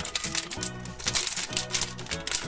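Plastic blind-bag wrapper crinkling and crackling as fingers work it open, over background music.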